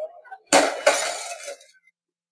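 Glass shattering: a sudden crash about half a second in, a second crash just after, and a bright tinkling tail that dies away within about a second.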